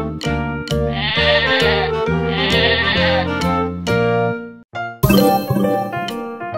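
A sheep bleating over cheerful children's background music. The music breaks off briefly near the end, followed by a loud sudden sound.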